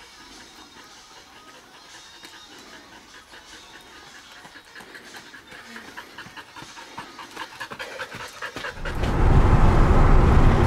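A dog panting quickly and steadily, close by, growing louder. Near the end a loud, low rumble of the truck driving cuts in.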